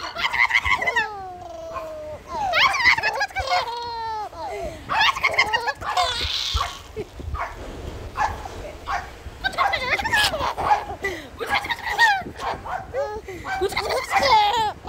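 A baby laughing and squealing in short, high-pitched giggles with brief breaks between them, including a quick rattling giggle a few seconds in.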